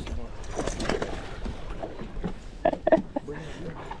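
Faint, indistinct voices over a low, steady rumble of wind on the microphone.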